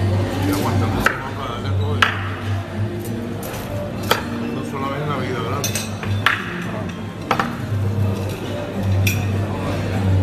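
Sharp clinks of cutlery and dishes, about six at irregular intervals, over background music and voices.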